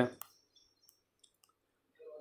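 A spoken word ends, followed by a single short click, then near silence.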